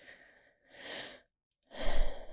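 A woman breathing audibly into a close microphone: a soft sigh about a second in, then a stronger breath near the end.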